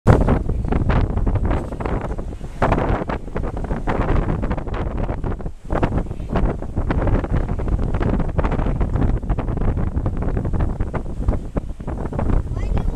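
Strong wind buffeting the microphone in ragged gusts, with ocean surf washing against the pier pilings underneath.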